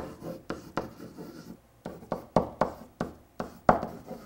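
Marker writing on a whiteboard: a quick series of about a dozen short strokes, roughly three a second, as a word is written out.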